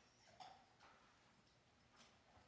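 Near silence: room tone with a few faint, short clicks, the loudest about half a second in.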